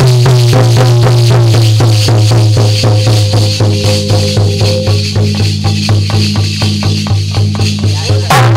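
Instrumental music: a harmonium holding a low drone under a melody, over steady percussion at about four beats a second.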